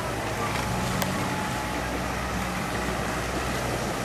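Land Rover Defender's engine running with a steady low drone as the vehicle pushes slowly through bonnet-deep river water.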